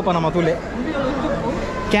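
People in a crowd talking over one another: a nearby voice at the start, then fainter mixed chatter, then a louder voice again at the end.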